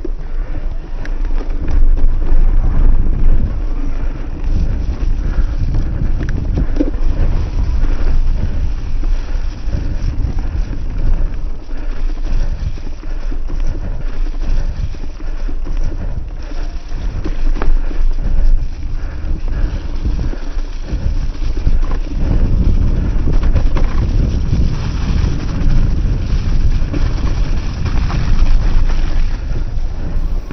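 Wind buffeting the action-camera microphone over the rumble and rattle of an electric full-suspension mountain bike rolling downhill over a rough, leaf-covered dirt trail, with scattered small knocks from roots and stones. The rumble grows heavier in the last several seconds.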